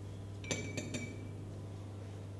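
A metal spoon clinking against a soup plate: three quick clinks about half a second in, the first ringing briefly.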